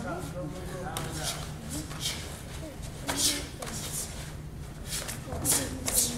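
Close-range karate sparring: bare-fisted punches and knees thudding against cotton karate gis, with gi fabric rustling and bare feet shuffling on the mat. There are several sharp hits, the loudest about three seconds and five and a half seconds in.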